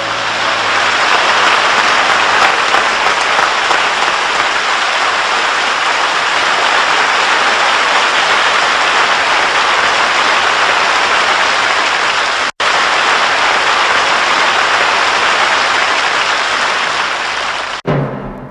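Audience applauding loudly and steadily as the last notes of the song die away. The applause breaks off for a split second about twelve seconds in.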